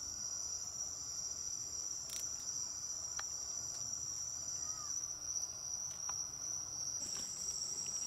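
Steady high-pitched trilling of night insects, with a second, higher trill that stops about five seconds in and comes back about two seconds later.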